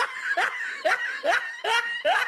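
A person laughing in short repeated bursts, about two a second.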